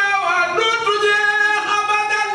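A man singing a solo unaccompanied chant into a microphone, holding long high notes that bend slightly in pitch.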